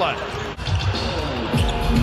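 Basketball game court sound: a ball bouncing on the hardwood court, with music playing in the arena.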